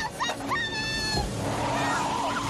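A child screaming in short rising cries, then one held high scream about half a second in, over a steady rumble and hiss from the film soundtrack.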